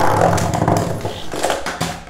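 LEGO Ninjago spinner (plastic spinning-top build) whirring and rattling as it spins and rolls on its edge across a tabletop after a pull-cord launch. It is loudest at first and dies away over about two seconds, with a few clicks near the end.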